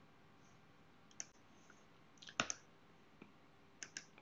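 Faint computer mouse clicks, a few scattered ones: a single click about a second in, a louder pair near the middle, and two quick clicks near the end.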